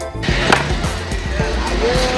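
Heavy wooden tamarind-log chopping blocks knocking against one another as they are handled: one sharp loud knock about half a second in, then a few lighter ones, over outdoor background noise.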